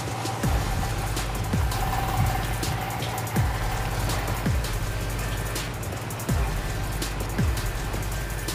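Background music with a steady bed of low tones, deep bass drum hits that drop in pitch roughly once a second, and light ticking cymbals.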